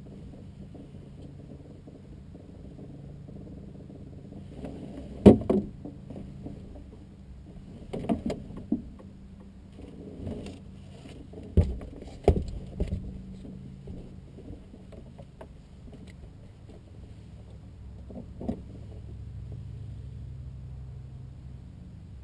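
Several sharp knocks and rattles of things being handled in a small aircraft's cockpit, the loudest about five seconds in and a cluster between eight and thirteen seconds, over a steady low hum.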